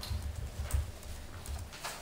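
Sheets of paper being handled and leafed through: a few soft low thumps in the first second and a half, and a couple of short crisp rustles.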